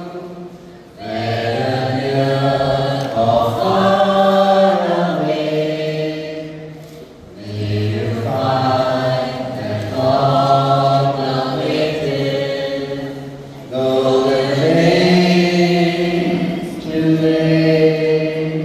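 Group of men and women singing together through microphones, in long sung phrases with brief breaks between them, about every six seconds.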